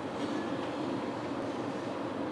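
Steady rumbling background noise with no speech and a couple of faint ticks.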